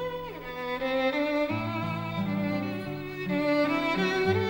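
Silent-film musical score: a violin melody over lower bowed strings, with a quick downward slide near the start.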